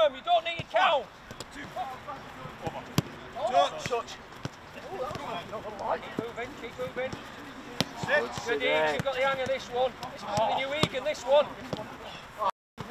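A football being struck with sharp, separate thuds during a quick passing drill on grass, among players' indistinct shouts and calls.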